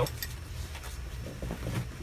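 Faint steady low rumble of background noise with a few light clicks and rustles of handling inside a small cockpit.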